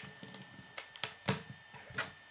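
Plastic Lego bricks clicking and tapping as they are handled, set on a wooden table and pressed together: several sharp, separate clicks, the loudest a little past halfway.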